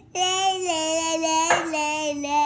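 A young girl singing long held 'lay' notes in a high voice, with a brief breathy break about one and a half seconds in.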